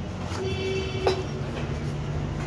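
Metal gearbox housing of a demolition hammer being handled and shifted: a short squeal of about a second ending in one sharp knock, over a steady low hum.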